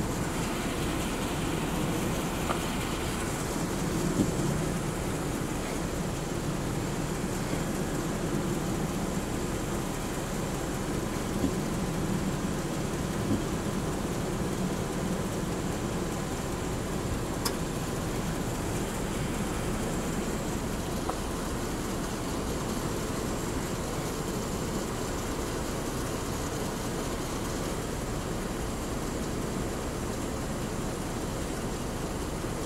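Steady low rumble and hiss of background road noise, with a few faint clicks.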